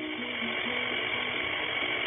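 Small electric blender running steadily, its motor and blades making an even noise, with a simple tune of short notes playing over it.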